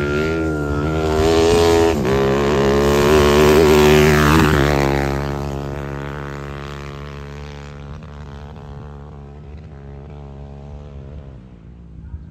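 A small motorcycle engine revving, its pitch rising and falling with the throttle, loudest about four seconds in as it passes close, then fading steadily as the bike rides off.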